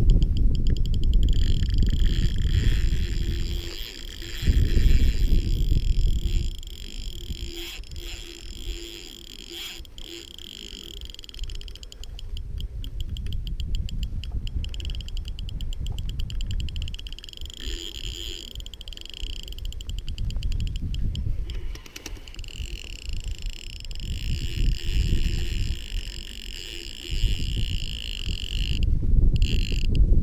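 A spinning reel being cranked to retrieve a lure, its rotor and gears giving a fine, fast-ticking high whir that stops briefly and starts again. Gusts of wind buffet the microphone in uneven low rumbles throughout.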